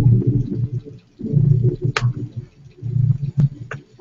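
A man's low, halting laughter coming in several bursts, with a few sharp clicks about two seconds in and again near three and a half seconds.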